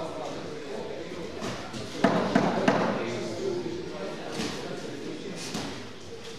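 Boxing gloves landing in an amateur bout: three sharp thuds in quick succession about two seconds in, with voices shouting in an echoing hall.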